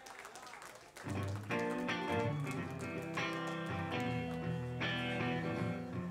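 A live rock band's electric guitar, bass guitar and keyboards come in about a second in, playing sustained notes and chords.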